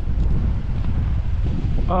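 Wind buffeting the camera microphone, a loud, uneven low rumble.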